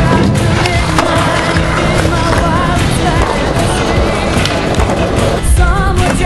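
Skateboard wheels rolling on concrete, with repeated clacks from the board, under music with a wavering melody.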